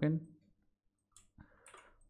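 A few faint, sharp clicks from a computer mouse and keyboard, starting about a second in.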